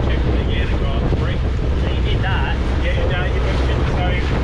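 Outboard motor running steadily as a small aluminium boat travels along, with water rushing past the hull and wind buffeting the microphone.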